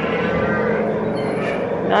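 Livestock barn din: a steady mix of cattle lowing and indistinct voices, with no single sound standing out.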